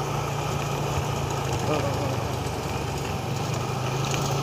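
Motorcycle engine running steadily at an even speed while riding, with road and wind noise.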